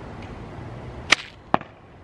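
Slingshot arrow shot: a sharp snap of the bands being released about a second in, followed less than half a second later by a shorter crack of the arrow striking the target.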